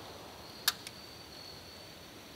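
Quiet pause between pistol shots: faint outdoor ambience with a thin steady high-pitched tone, and one sharp small click a little under a second in, followed by a fainter one.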